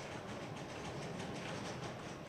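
Faint, steady background noise of a busy convention hall.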